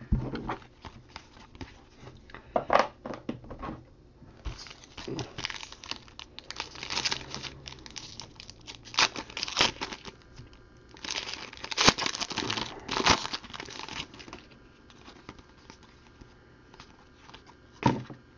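Foil wrapper of a 2015 Donruss Diamond Kings baseball card pack being torn open and crinkled by hand, in repeated short bursts of crackling, loudest about eleven to thirteen seconds in.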